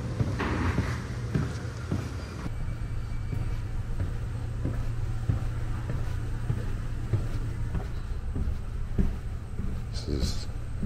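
Footsteps walking down an airport jet bridge, about two a second, over a steady low rumble.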